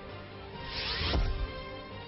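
Transition sting over a steady music bed: a whoosh swells up and ends in a low hit a little over a second in.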